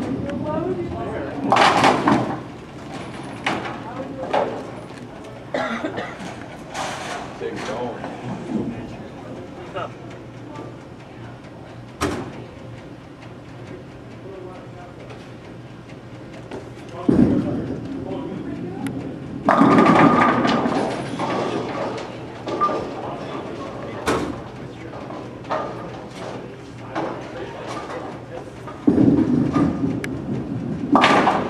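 Bowling alley: balls thud onto the wooden lane and roll, and pins crash a couple of seconds later, once about two seconds in and again around twenty seconds in; another ball hits the lane near the end. Background chatter from the alley throughout.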